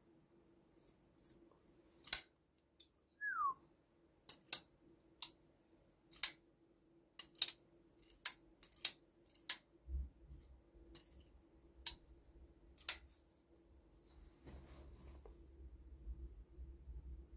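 Kizer Begleiter XL button-lock folding knife being worked open and shut by hand: about fourteen sharp clicks at uneven intervals as the blade snaps into lock and the button releases it. One short falling squeak about three seconds in, and handling rustle near the end.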